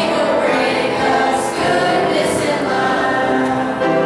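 Youth choir singing a Christmas song together, many voices holding long notes.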